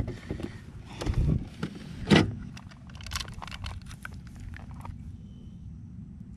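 Clicks, taps and knocks of a largemouth bass being handled with a lip grip and a plastic measuring board on a kayak deck. The loudest knock comes about two seconds in, followed by a run of quick light clicks.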